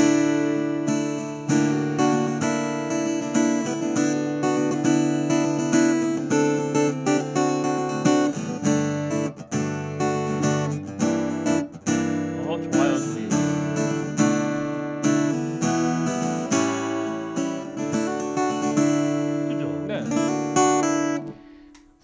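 Yamaha CSF-TA compact acoustic guitar strumming chords, heard through its pickup and an AER acoustic amplifier with nothing set. The strumming is steady, and the last chord fades out just before the end.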